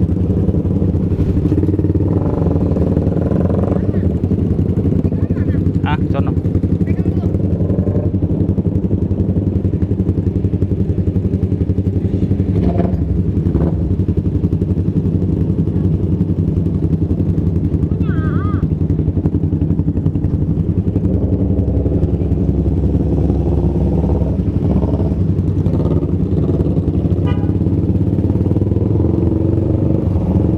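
Motorcycle engine running steadily at low revs, heard close up from the rider's own bike, with no revving or changes in pitch.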